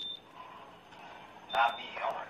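Faint, indistinct voices from a phone's live-stream recording, with a louder spoken word about one and a half seconds in. A short high beep sounds at the start and again with that word.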